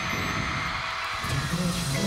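Pop music playing on a live stage performance, with a low melodic line coming in about halfway through.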